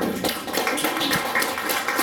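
A small group of people clapping by hand, with a few voices among the claps.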